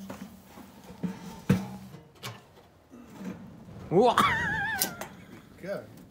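A person clears their throat about four seconds in, then holds a high, wavering vocal note for about a second. A few light knocks come earlier.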